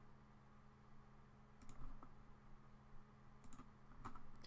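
Faint computer mouse clicks, a few about halfway through and a couple more near the end, over a low steady hum.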